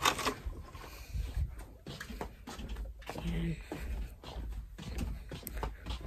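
Footsteps and handling noise from a handheld phone carried by a person walking through a house: an uneven low rumble with scattered small knocks and clicks. A short murmur of voice comes about halfway.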